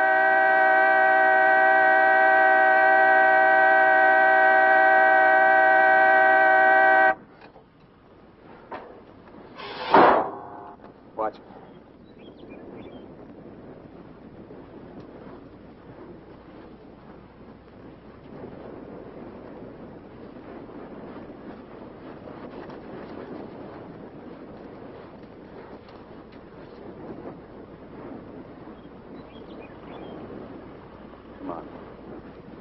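A loud, steady sustained tone of several pitches sounding together cuts off suddenly about seven seconds in. About three seconds later comes a single sharp knock, then a fainter click, then faint steady background noise.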